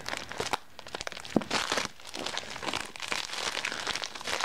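Plastic mailer bag crinkling and rustling as scissors work at it, with sharp irregular clicks; a longer, louder rustle comes about one and a half seconds in.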